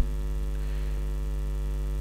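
Steady electrical mains hum: a constant low buzz with evenly spaced overtones, unchanging throughout.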